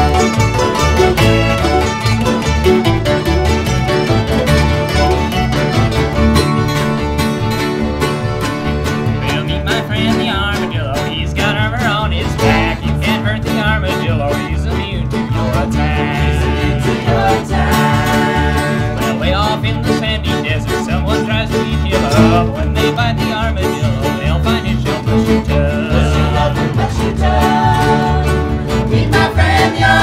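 A string band playing live: mandolin, acoustic guitar, accordion, upright bass and fiddle over a steady strummed beat, with a wavering melody line coming in about ten seconds in.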